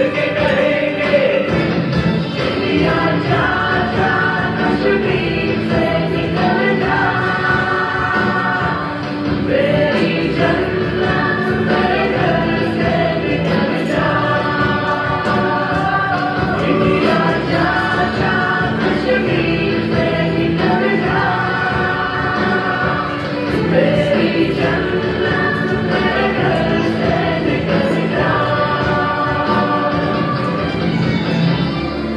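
Recorded Urdu song about Kashmir playing at a steady level: singing voices over musical backing, in repeating phrases of a few seconds each.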